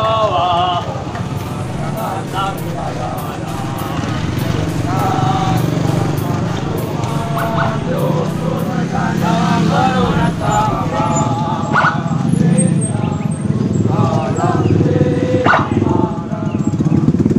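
Many voices from a column of marching soldiers over the steady low running of car and motorcycle engines crawling past, with a few sharp sounds near the end.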